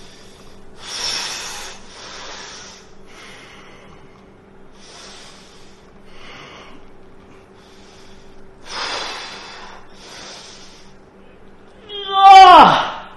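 A man breathing hard through his mouth and nose while straining through a slow cable chest fly, a forceful breath about every second, the loudest about a second in and again near nine seconds. A steady low hum runs underneath.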